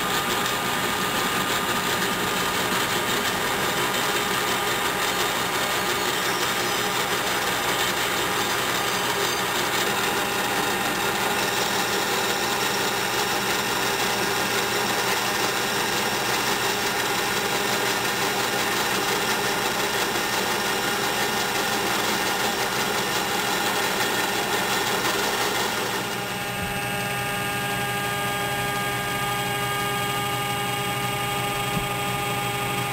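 Metal lathe running steadily, spinning an aluminum pulley blank in its chuck while the part is reamed and then wire-brushed. The running sound shifts to a slightly different, steadier tone about 26 seconds in.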